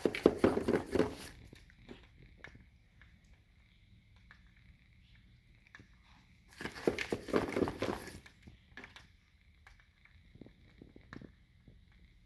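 Norwex microfiber dust mitt rubbing along window-blind slats in two short bursts of rustling, each a second or so long: one at the start and one about six and a half seconds in, with a few light clicks of the slats between.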